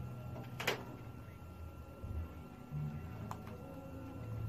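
Quiet small-room tone with a faint steady low hum, broken by a short rustle about two-thirds of a second in and a faint click later on, from over-ear headphones being handled and settled on the head.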